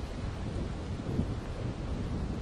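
Wind buffeting the microphone as a steady low rumble, over the hiss of sea surf washing around rocks.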